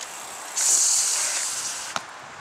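Bicycle braking to a halt: a high hiss of friction that starts about half a second in and fades away, ending in a short click.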